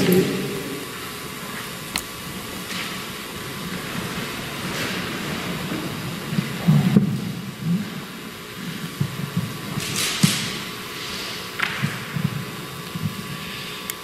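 Microphone handling noise: knocks and bumps as a handheld microphone is worked loose from its stand, with a sharp click about two seconds in, a cluster of bumps about seven seconds in and scattered knocks near the end.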